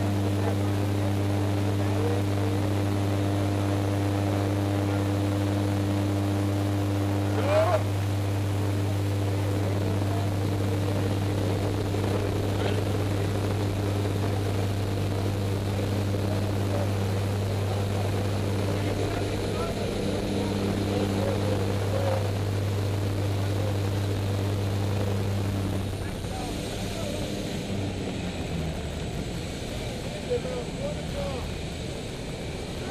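Propeller jump plane's engine drone heard from inside the cabin, a steady low hum, with wind rush through the open door and voices calling over it. About four seconds before the end the engine note drops away as power is cut back for the jumpers' exit.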